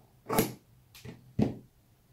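Tailor's shears cutting through thin linen fabric on a tabletop: three separate snips, the first and last loud, the middle one faint.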